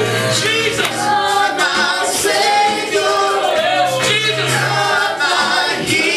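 Gospel worship song sung by a praise team of men and women into microphones, over instrumental backing with held low bass notes.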